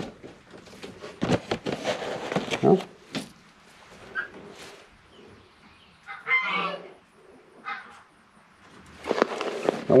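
Chickens vocalising in the pen: a few short clucks, with one longer call just past six seconds in.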